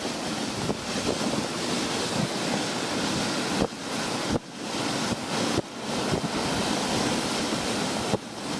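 Dog sled moving fast over snow: a steady rushing hiss of the runners on the snow mixed with wind on the microphone, with a few brief dips in level a little past the middle.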